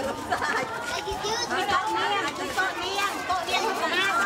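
Several young children's voices chattering over one another, high-pitched and overlapping.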